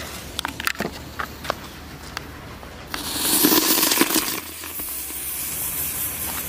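A red butterfly firecracker: its lit fuse sputters and crackles for about three seconds. Then the firecracker burns with a loud, steady hiss.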